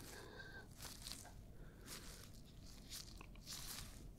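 Faint, soft rustling and crinkling of rubber exam gloves as gloved hands move close to the microphone, with a few light scattered rustles.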